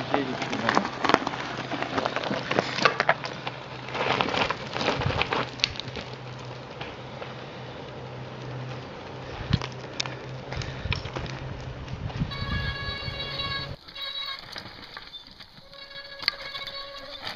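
Mountain bike rattling and clattering over a rough, stony forest descent, with tyres crunching on loose rock. Near the end comes a high-pitched, multi-tone squeal from the bike's disc brakes, brakes that are not getting any better.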